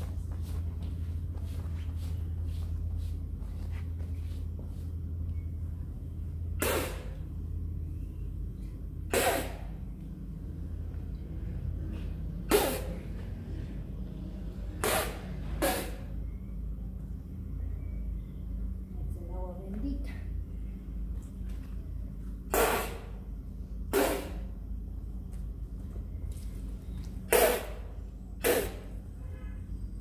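A person forcefully blowing a spray of liquor from the mouth, the ritual 'soplo' of an Ecuadorian limpia, in short hissing bursts about nine times at irregular gaps, over a steady low rumble.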